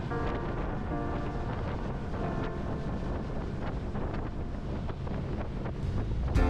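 Wind on the microphone over the steady running of a small tour boat under way on open water, with faint background music.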